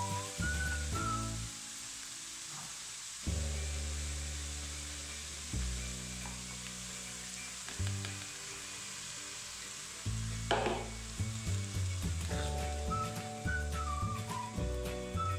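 Cabbage, carrot and shrimp sizzling steadily in a frying pan, under background music of slow held chords. About ten seconds in there is a short splash as liquid is poured through a strainer of shrimp heads into the pan.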